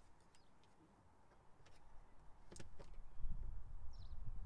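Faint clicks and low handling noise from a Volvo S80's plastic steering-column cover being worked loose by hand, a few light ticks in the first part and a low rubbing that grows louder in the second half.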